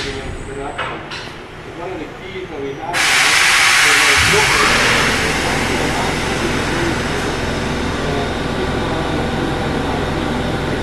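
A machine starting up: a sudden loud rush of hissing air about three seconds in, joined about a second later by a steady low motor hum, both running on.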